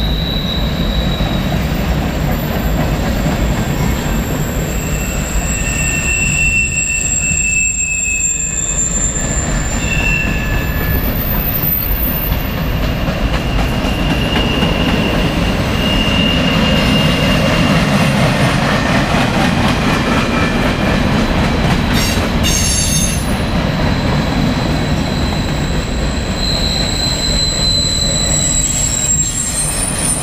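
Freight cars (centerbeam lumber cars, boxcars and open hoppers) rolling steadily past on the main line: a continuous heavy rumble of wheels on rail, with high wheel squeals at several pitches that come and go.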